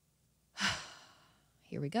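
A woman's heavy sigh, sudden and fading away over about a second: a nervous sigh of dread, followed by the spoken words "here we go".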